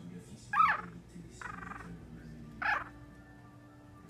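Yorkshire terrier puppy crying in three short, high squeals. The first, about half a second in, is the loudest and rises and falls in pitch. A rougher one follows about a second later, and a third comes near the three-second mark.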